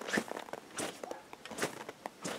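M1913 cavalry saber swung through the air, making three quick whooshes like a movie sword sound effect. The groove along the side of the blade, the fuller, makes the whoosh.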